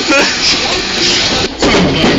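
Mostly speech: a man's voice talking over the running noise of a tram.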